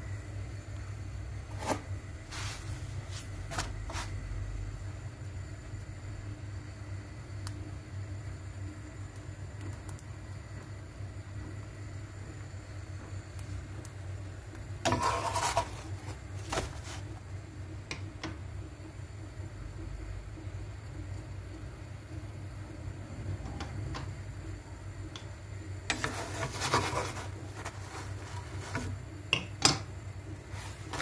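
Flatbread being handled in a non-stick frying pan on the stove: brief rubbing and scraping of the dough against the pan about halfway through, as it is turned, and again near the end, with a few light clicks. A steady low hum runs underneath.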